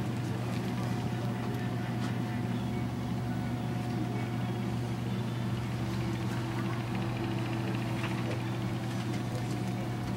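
Steady low electrical hum of running bench equipment, holding one pitch with a faint higher tone above it and a few faint clicks.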